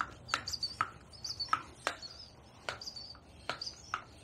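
Hand-held bicycle mini pump being worked on a tire valve to inflate the tire, a short click with each stroke, about one every half-second to second. Small birds chirp faintly in the background.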